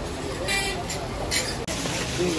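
Busy street ambience: road traffic with people's voices in the background, and two short high-pitched sounds about half a second and a second and a half in. The sound changes abruptly near the end.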